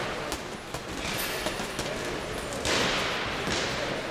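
Boxing sparring: scattered short thuds and smacks of gloved punches, with two longer swishing bursts of noise over the busy background of a boxing gym.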